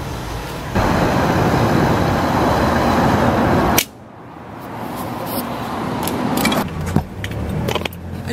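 A steady rushing noise that cuts off abruptly partway through, followed by handling rustle and several sharp clicks as someone climbs into a pickup truck's cab.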